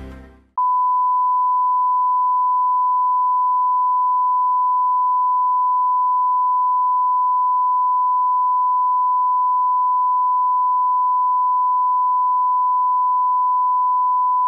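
Steady 1 kHz test tone, the reference tone that goes with colour bars, starting about half a second in as a music sting fades out and holding one unbroken pitch at a constant level.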